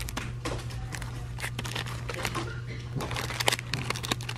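Plastic packaging crinkling and rustling as a hand handles packs hanging on a store pegboard: a string of short, irregular crackles over a steady low hum.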